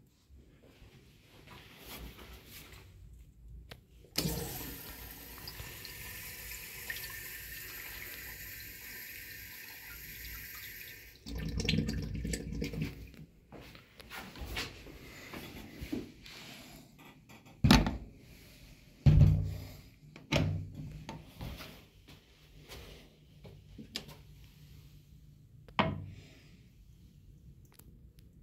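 A flush valve hissing steadily for about seven seconds and cutting off sharply, followed by a short lower rush of water. Later come several sharp knocks and clanks of a metal toilet-stall partition door being swung open and bumping.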